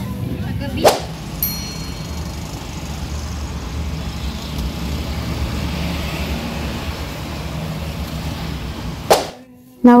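A vehicle running, heard as a steady low rumble from inside its cabin, with a sharp knock about a second in and a brief high ding just after. Another sharp knock comes just after nine seconds before the sound cuts out.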